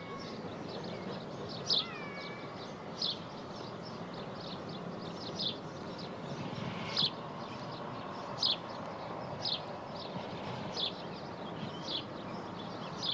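A bird chirping over and over, one short high chirp every second or so, over a steady background rumble of outdoor noise.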